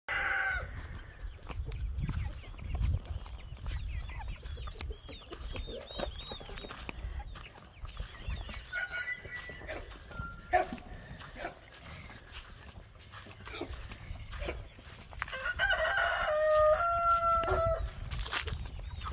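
Chickens clucking and calling, with a rooster crowing loudly near the end, its call held in a few stepped pitches for about two seconds.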